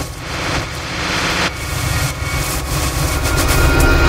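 A swelling rush of noise over a low rumble, growing steadily louder like a jet-engine or whoosh riser: an intro sound effect.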